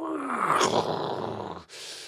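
A man's voice making a crash-and-rumble sound effect for an earthquake bringing down a tower. It is a rough, noisy vocal sound that starts with a falling pitch and ends in a short hissing 'shh' near the end.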